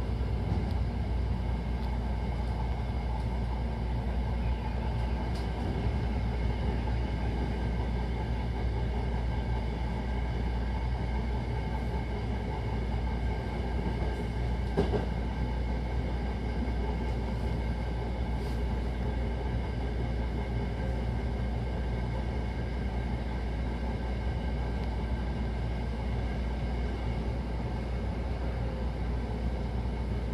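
Hankyu Takarazuka Line electric train running at speed, heard from inside the car: a steady rumble of wheels on rails with a faint steady hum, and a few light clicks, the clearest about halfway through.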